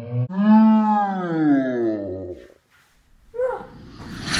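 A long drawn-out wordless cry from a person's voice, lasting about two seconds, its pitch rising briefly and then sliding steadily down, followed by a short cry a second later.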